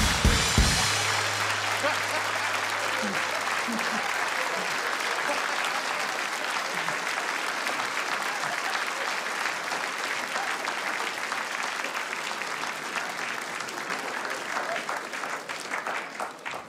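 Theatre audience applauding steadily for about fifteen seconds, slowly dying down near the end. A short band sting with drums ends about a second in, its low note lingering for a few seconds under the clapping.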